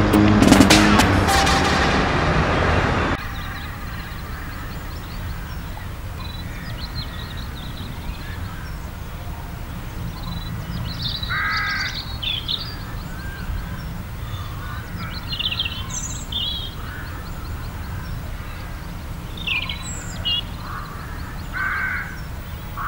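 Music that cuts off about three seconds in, then outdoor ambience with several birds calling: scattered short chirps and a few harsher calls.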